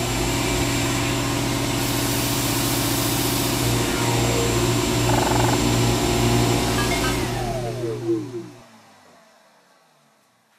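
An electric motor-driven machine spinning up, running steadily with a strong low hum and a high hiss, then winding down near the end and fading away.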